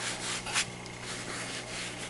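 Hand rubbing and rustling fabric: a yarn scarf being handled and stretched on a quilted comforter, a soft continuous scuffing with a couple of slightly louder strokes, over a faint steady low hum.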